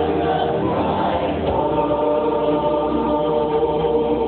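Mixed choir of male and female voices singing into handheld microphones, holding sustained chords that move to a new chord about one and a half seconds in.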